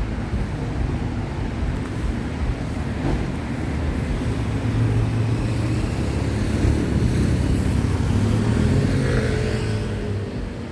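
Road traffic: vehicle engines running and passing, with one engine growing louder through the second half and rising in pitch near the end as it approaches.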